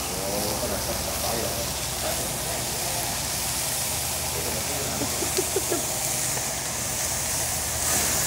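Vegetables sizzling steadily on a hot teppanyaki griddle, an even hiss, with a few faint voices about half a second in and again around five seconds in.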